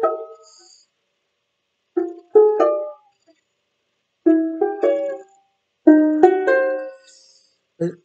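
Banjolele (banjo-ukulele) picking a short riff: about three brief phrases of a few plucked notes each, separated by pauses of about a second.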